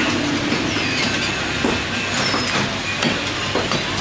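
Butcher's cleaver chopping beef on a wooden chopping block, a short knock roughly every two-thirds of a second, over a steady background din.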